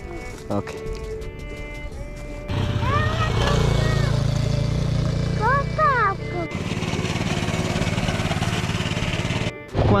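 Small motorcycle engine running steadily from a few seconds in, with background music over it.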